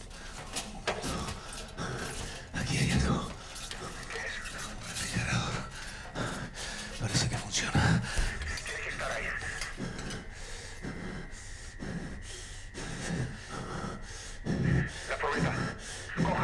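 Heavy breathing and muffled, indistinct voices, with frequent knocks, scrapes and thumps of gear and camera handling as a helmet-camera wearer moves through a cramped space. A thin, steady high tone comes in about ten seconds in.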